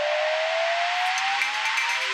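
A rising whoosh of a broadcast intro sting: a swell of noise with one tone gliding slowly upward. Faint music notes join about halfway through.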